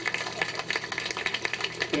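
A dense, rapid, irregular clatter of small clicks, continuing steadily in a pause between speech.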